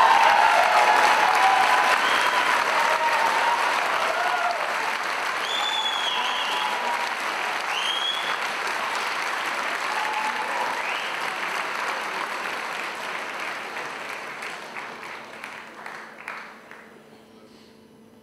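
Audience applauding and cheering a performer onto the stage, with a few shouts rising above the clapping. The applause is loudest at first and dies away gradually, fading almost to nothing near the end.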